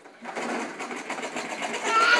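Toy push lawn mower rattling with rapid, even clicks as a toddler pushes it across the carpet. A child's high squeal starts near the end.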